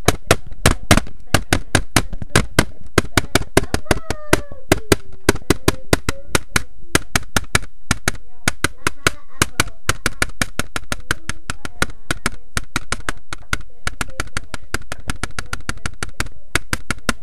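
Rapid, sharp clicks or taps, about six a second, with faint voices underneath.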